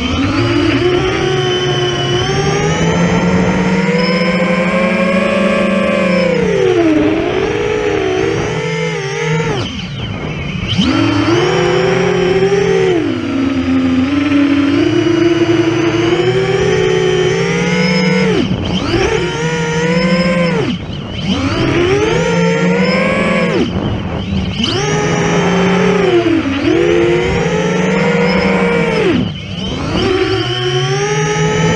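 The four Brother Hobby 2812 400kv brushless motors of a 12S FPV quadcopter, spinning 10-inch three-blade props and heard from its onboard camera: a loud motor whine and prop buzz rising and falling in pitch with the throttle. It drops away briefly several times as the throttle is chopped, then climbs again.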